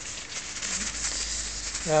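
Paper kitchen towel wiping across a brushed stainless steel oven door and handle, an uneven soft rubbing and swishing.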